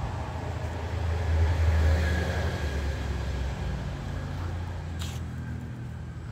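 A low engine rumble that swells about one and a half seconds in and then slowly fades, with a short hiss about five seconds in.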